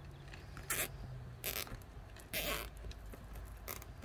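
A plastic zip tie being pulled through its ratchet lock in four short, scratchy pulls as it is fastened around a wire wreath frame.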